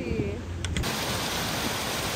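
A rain-swollen mountain creek rushing, a steady full hiss of running water that starts abruptly about a second in.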